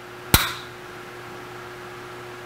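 A single sharp metallic click with a brief ring, from an Allen key at the adjusting screws of a Haimer 3D taster in a milling machine spindle. A steady low hum runs underneath.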